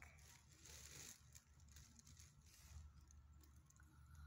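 Near silence with faint rustling and handling noise, strongest in the first second.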